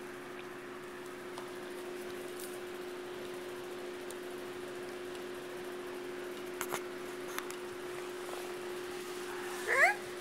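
Domestic cat giving one short, rising meow near the end, over a steady low hum, with a few faint clicks in the middle.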